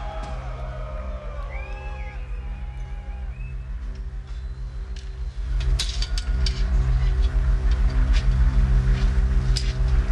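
A live metal band opening a song: a steady low droning intro with a few thin high gliding tones. About five and a half seconds in, the full band comes in louder, with repeated drum and cymbal hits.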